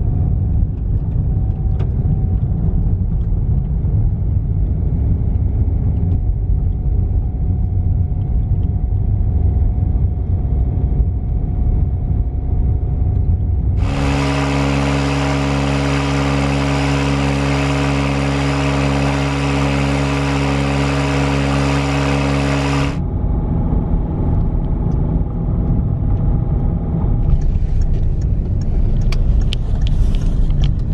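Car driving heard from inside the cabin, a steady low road and engine rumble. For about nine seconds in the middle it is replaced, with abrupt cuts, by an electric motor running a belt-driven pump or compressor unit: a steady, even hum with a clear pitch and a hiss over it. Then the car rumble returns, with a few light clicks near the end.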